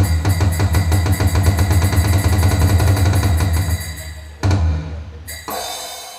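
Recorded music with a drum kit playing a fast, even beat over a heavy bass. It thins out about four seconds in, with one short louder burst before it dies down.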